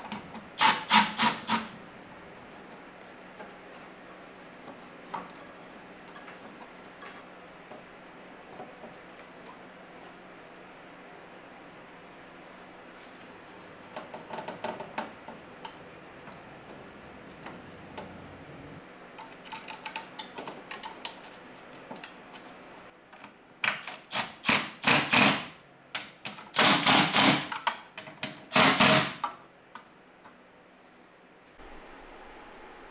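Milwaukee cordless drill running in short bursts, boring a quarter-inch bolt hole through the Jeep's body tub: a brief run about a second in, a few lighter runs around the middle, then three longer, louder runs near the end.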